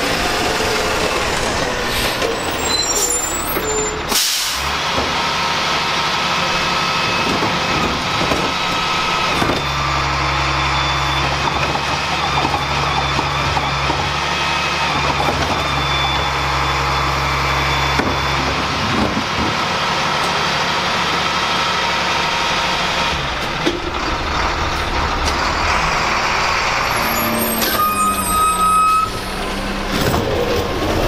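Garbage trucks at work in a run of short clips: diesel engines running under a steady hydraulic whine as carts are lifted and emptied, with a short, loud burst of hiss about four seconds in.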